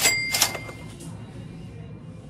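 Cash-register 'cha-ching' sound effect: two quick metallic strikes about half a second apart, with a bell tone ringing on briefly after, over quiet background music.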